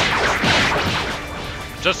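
Fight sound effects: a run of hits and crashes over background music, fading out near the end.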